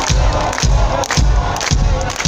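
A live band playing loud amplified music with a heavy kick-drum beat of about two beats a second, over crowd noise.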